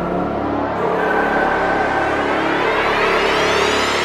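Slowed-down, reverb-heavy electronic trap track in a build-up: a synth sweep rises steadily in pitch from about a second in, over held synth tones.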